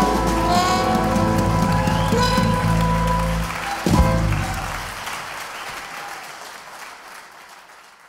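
A small jazz band of cornet, piano, guitar, bass and drums holds the final chord of a song and cuts off with one last hit just before four seconds in. Audience applause follows and fades away.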